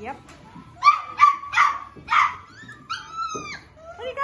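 Cavapoo puppies barking in high, sharp yips: four quick barks in the first half, then a longer, drawn-out wavering yelp about three seconds in.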